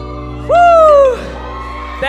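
A loud, drawn-out shout into a microphone, jumping up in pitch and then sliding down, lasting about two-thirds of a second. Under it, a low note of the backing track is held and cuts off near the end.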